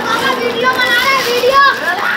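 Children's voices shouting and chattering, high-pitched and overlapping.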